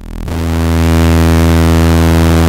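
Ableton Drift software synthesizer playing one held low bass note from two low-octave oscillators plus noise, its filter frequency-modulated by the LFO, giving a super nasty, airy bass. The note swells in over the first half second and then holds steady.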